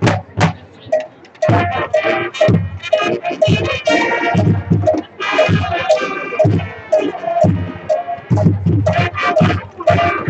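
A high school marching band playing live: brass over drums and percussion in its Latin show music. The sound is thinner for the first second and a half, then the full band comes in.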